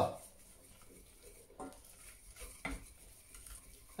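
Wooden spoon stirring a thick butter-and-flour roux in a stainless steel saucepan, faint, with a few soft scrapes and knocks against the pan.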